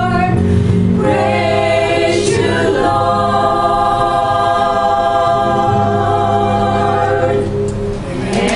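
Choir singing, changing chord about a second in and then holding one long chord that breaks off near the end.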